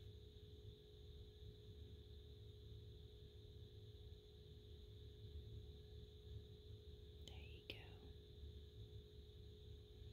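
Near silence: a steady low hum, with a faint brief whisper about seven seconds in.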